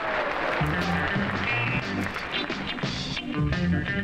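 Studio audience applause dying away at the start, then instrumental pop music with a plucked bass line and guitar, heard as the audio of an old TV broadcast.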